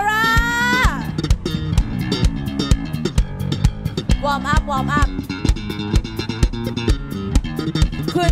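Live rock band playing, heard through the bass player's in-ear monitor mix: bass guitar prominent over a steady drum-kit beat, with a falling slide near the start and wavering guitar or vocal notes about halfway through.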